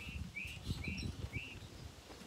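A small bird chirping in a steady series of short, identical notes, about two a second, with a faint low rumble underneath.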